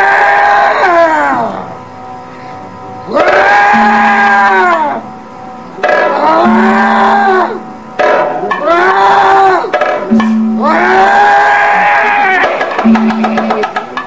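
Kathakali padam singing: a male voice draws out five long phrases, each rising and then falling in pitch, with short breaks between them. A steady held tone comes and goes underneath, and rapid percussion strikes come in near the end.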